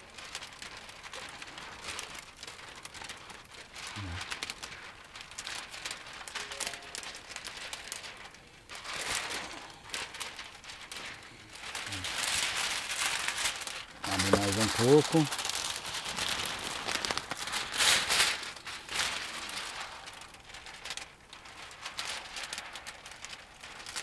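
A sheet of plastic window tint film crinkling and rustling as it is handled and pressed against the glass, busiest and loudest through the middle of the stretch.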